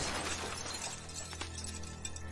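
Sound effect of a frozen body shattering like ice: a crash of breaking glass-like pieces that fades into scattered clinks, with background music underneath.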